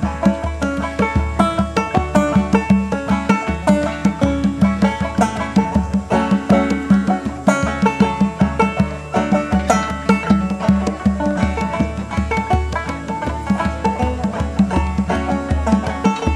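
Live string band playing an instrumental passage: quick banjo picking and other plucked strings over a steady low beat.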